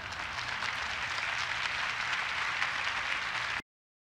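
Audience applauding, a steady dense clapping that cuts off suddenly near the end.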